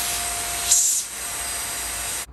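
Handheld vacuum cleaner running, sucking dust out of a robot vacuum's opened chassis. About three quarters of a second in there is a brief louder hiss, after which a steady whine drops out and the suction noise carries on a little lower.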